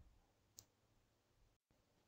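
Near silence: faint room tone, with one faint click a little over half a second in.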